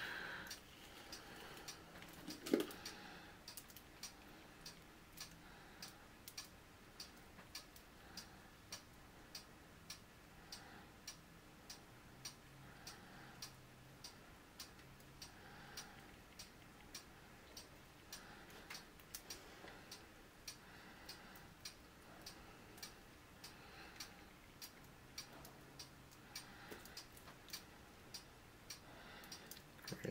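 Faint, evenly spaced ticking that keeps a steady beat, with one louder soft knock about two and a half seconds in.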